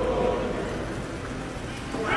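Steady, noisy background hubbub of a large indoor atrium, with no clear voices standing out.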